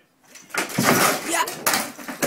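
A cat jumping onto a hanging ceiling lamp: starting about half a second in, a loud clatter and knocks as the lamp swings and the cat drops, with people's voices exclaiming over it.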